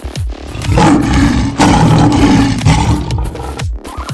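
A lion roaring loudly for about two seconds, starting about a second in, over background music with a beat.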